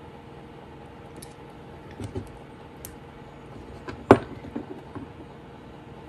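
A few light metal clicks and taps of a tool handling a fork whose tines are being bent, with one sharp click about four seconds in, over a steady low hum.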